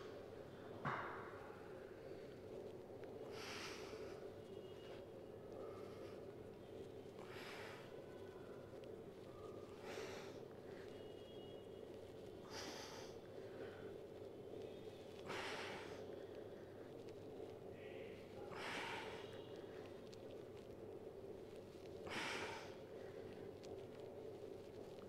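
A man's forceful breaths out, one with each push of a heavy dumbbell incline press, coming about every three seconds, over a faint steady hum.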